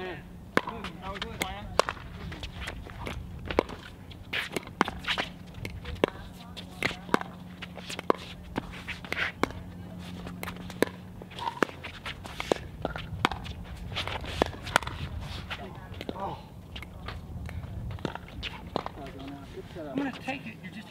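Pickleball rally: a long string of sharp pops as paddles strike the plastic ball, coming quickly at times, over a faint steady hum.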